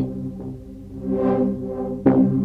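Synthesizer chords from FL Studio's Sytrus, made of three slightly detuned oscillators with two on different octaves, held and sustained. The filter cutoff moves down and then up, so the chord darkens and then swells brighter about midway before dulling again. A new chord strikes right at the end.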